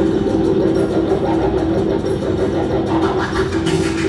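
Live electronic music played on a pad controller: a steady low drone with a noisy texture and no clear beat, with short percussive hits coming in near the end.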